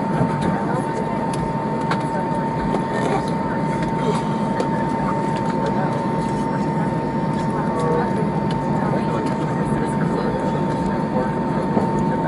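Steady cabin noise of an Airbus airliner taxiing to the gate after landing, its jet engines at idle with one steady high whine running through. A low murmur of passenger voices sits under it.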